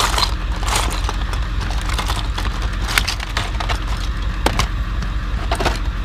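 Small plastic toy pieces clicking and clattering against each other as a hand rummages through a box of them, in scattered sharp clicks. A steady low hum runs underneath.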